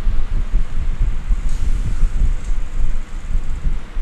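Uneven low rumble on the microphone, like wind or breath buffeting it, with no speech.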